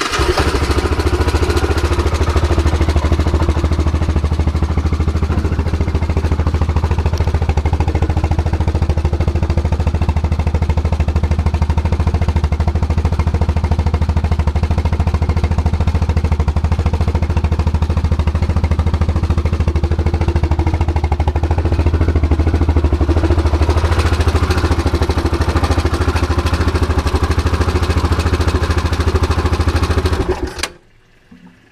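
Yamaha Rhino UTV's single-cylinder engine running steadily, loud and close.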